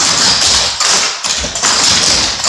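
Clogging taps on a wooden floor: a group of cloggers dancing in unison, their shoe taps striking in quick runs with short breaks between them.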